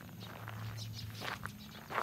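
Footsteps on a gravel path, a few light steps, over a low steady hum.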